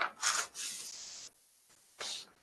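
Paper bid documents sliding out of a manila envelope: two quick rubbing strokes, then a longer steady rub of paper on paper that cuts off suddenly just over a second in.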